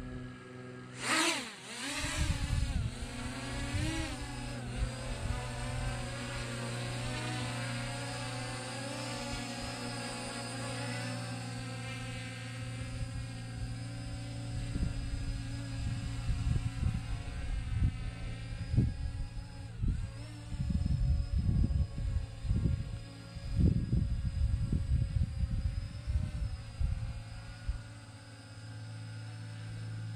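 RG106 quadcopter drone's motors spinning up with a rising whine about a second in as it lifts off, then the propellers' whine wavering in pitch as it flies away and grows fainter. Low rumbling gusts hit the microphone in the second half, over a steady low hum.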